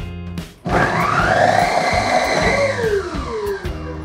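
Vitamix motor base driving the food processor's large shredding disc through a block of cheddar cheese. A loud whir starts about a second in, its pitch rising and then gliding down near the end, over background music.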